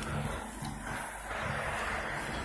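Steady low engine hum with a hiss of street noise and wind on the microphone.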